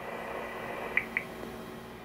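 Faint, steady hiss of an open analog UHF radio channel coming through a scanner's speaker between transmissions, with two brief faint blips about a second in.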